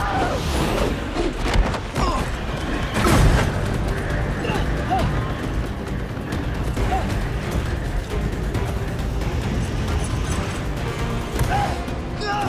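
Action-film soundtrack: a music score mixed with a loud rushing-air rumble, heavy impacts about a third of a second in and again about three seconds in, and a few short grunts.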